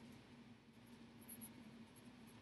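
Faint scratching of a pencil writing on paper, over a faint steady low hum.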